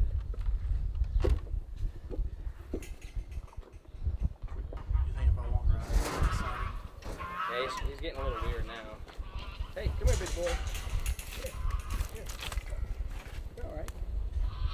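Goats bleating now and then over indistinct voices, with a constant low rumble on the microphone and a few sharp knocks in the first seconds.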